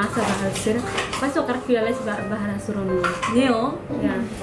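A woman's voice singing a slow, wavering melody with long held notes, with a few light clicks over it.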